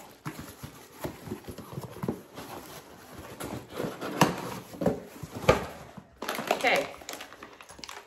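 Cardboard box and packaging being rummaged through: irregular rustling and crinkling with light clicks and taps, a few sharper taps just past the middle.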